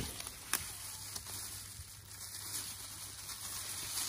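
Faint handling noise of gloved hands winding thread round a cuttlefish bait, a soft hissy rustle with one sharp click about half a second in.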